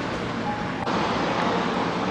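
Steady outdoor street noise: an even rushing sound like road traffic or air moving past the microphone, stepping up slightly just under a second in.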